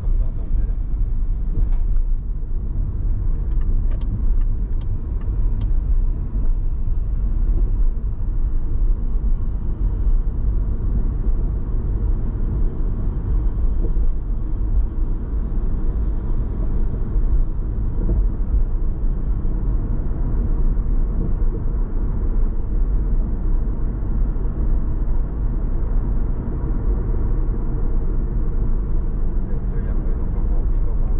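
A car driving at steady speed, its tyre and engine noise a continuous low rumble, with a few faint clicks a few seconds in.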